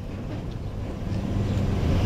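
A low, steady engine hum that grows slightly louder.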